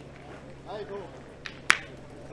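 One sharp metallic clack of a steel pétanque boule striking another boule, near the end, just after a fainter click.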